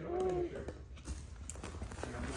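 A few faint, scattered taps and knocks, made by a child moving about and handling things near a tiled floor.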